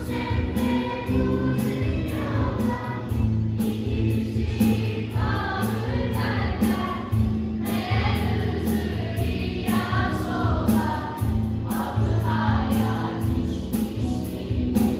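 Choir singing a Turkish song in unison phrases, accompanied by a live band with a strong bass line and drum strikes.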